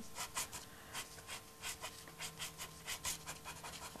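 A soft pastel stick scratching across textured pastel paper in many quick, short, irregular strokes, faint.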